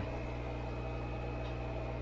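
Steady low hum with a faint, even hiss and a thin high tone: indoor room tone.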